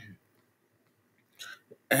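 A pause in a woman's talk: near silence, broken about one and a half seconds in by one short, faint mouth sound, and her speech starts again at the very end.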